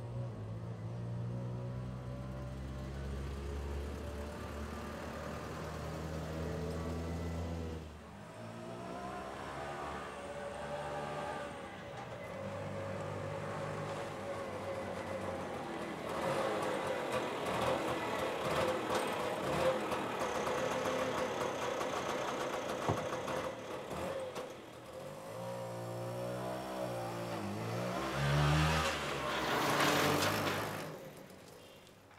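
Auto-rickshaw (three-wheeler) engine running, low and steady for the first several seconds, then rising and falling in pitch as it revs and changes speed, with another rev change near the end.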